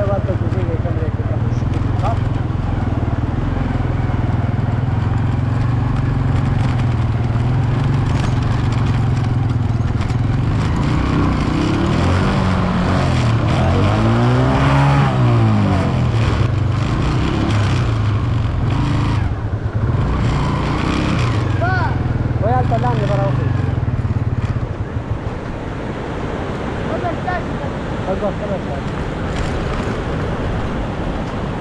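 Car engine running steadily while driving on a dirt track, heard from inside the cabin, with a pitched sound that rises and falls about halfway through. Near the end the engine note drops and goes quieter.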